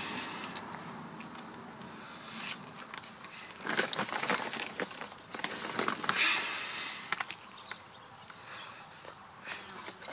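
Dry white peat being crumbled by hand into a plastic plant pot, breaking up the large lumps: rustling and crackling with small clicks, and louder scrunching about four and six seconds in.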